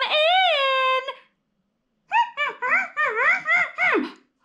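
A woman's voice holds a long, sing-song call that rises and falls in pitch. After a pause of about a second, a run of quick, high, giggly voice sounds swoops up and down.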